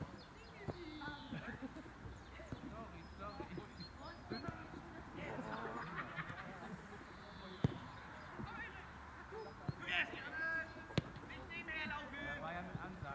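Indistinct shouts and calls of players across a football pitch. A few sharp thuds of a football being kicked stand out, the loudest a little past seven seconds in and another about eleven seconds in.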